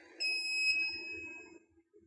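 Semi-auto analyzer's electronic beeper giving one high-pitched beep a moment in, lasting about a second and a half and fading away. It marks the end of the water-blank measurement, as the analyzer prompts to test the reagent blank again.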